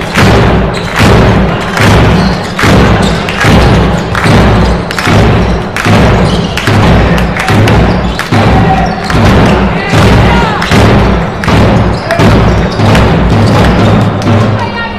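Loud drumbeat keeping a steady rhythm, a little over one beat a second, with music and voices under it.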